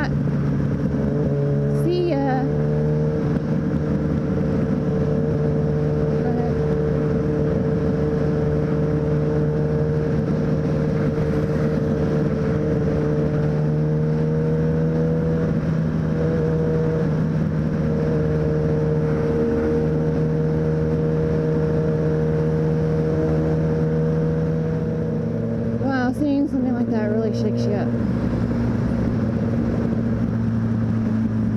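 Sport motorcycle engine running at a steady cruise in freeway traffic, heard from the rider's camera over road and wind noise. Near the end its pitch rises several times in quick succession as the throttle is opened.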